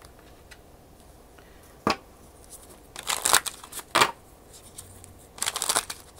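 A deck of tarot cards being handled and shuffled on a table: a single sharp tap about two seconds in, a short burst of shuffling around three seconds, another tap, then a quick run of card rustles near the end.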